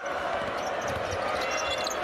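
A basketball being dribbled on a hardwood court: repeated low bouncing thuds over the steady noise of an arena crowd.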